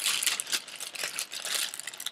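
A shopping bag being handled and rustled, with a run of crinkles and crackles as hands work in it.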